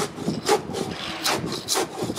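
Long-handled scraper dragged across a painted exterior wall, lifting paint coating softened by a water-based paint stripper: repeated scraping strokes, about two a second.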